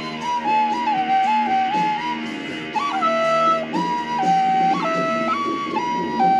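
Wooden recorder playing a slow melody of held notes that step up and down, over lower accompanying music.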